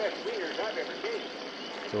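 A faint voice in the first second, over a steady background hiss.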